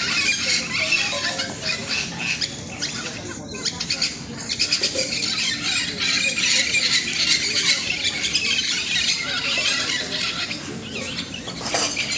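A flock of parakeets squawking and chattering in a tree: a dense, continuous mass of many overlapping high-pitched calls.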